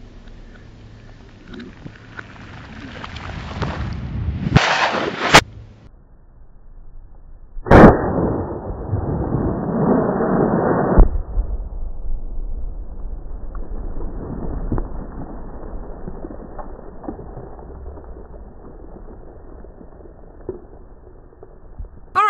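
Rifle fire from a 7.62 mm FN FAL: two sharp reports about two seconds apart, the second the loudest. After the second comes a few seconds of dull, muffled rushing that cuts off suddenly.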